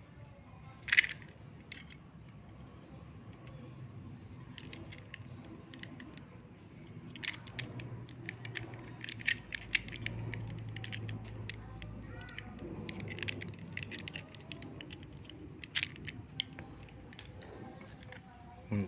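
Metal clicks and rattles of a compression crimping tool for F connectors being handled and opened while a coax cable end with its F connector is fitted into its jaws. A sharp single click about a second in is the loudest, and a run of small clicks follows over the second half.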